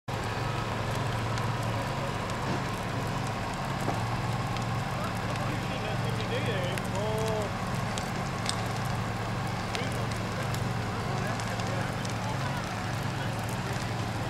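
A burning car crackling with scattered sharp pops, over the steady low drone of an idling fire engine.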